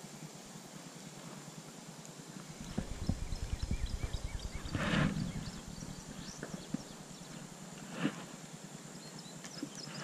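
Spinning reel being cranked to retrieve a lure, with rhythmic knocking and rattling from the reel and handling of the rod, and two louder brushing sounds, one about halfway through and one near the end.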